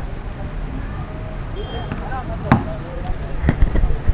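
Outdoor pedestrian ambience: indistinct voices of passers-by over a steady low rumble, with a few sharp taps or knocks, the loudest about two and a half seconds in and two more shortly before the end.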